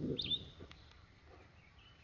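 A single sharp bird chirp just after the start, then faint bird calls further off, over a low outdoor hush. A brief low rumble at the very start is the loudest sound.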